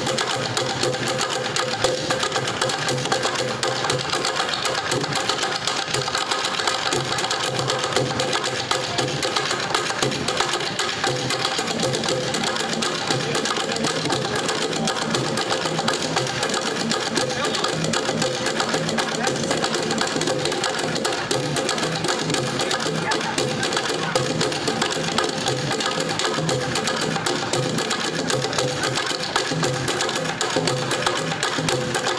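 Bucket-drumming ensemble: several players beating sticks on upturned plastic buckets in a fast, unbroken rhythm.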